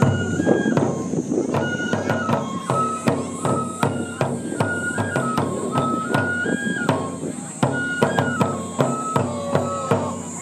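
Japanese folk dance music for a kenbai sword dance: a large barrel drum on a stand beaten in a steady rhythm under a high bamboo flute melody that moves in clear steps between held notes.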